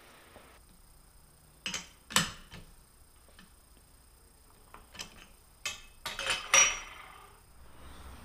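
Metal clinks and knocks from a T-handle chuck key being worked in a lathe chuck to free a small aluminum part. A handful of separate knocks, the loudest group near the end with a brief high ring.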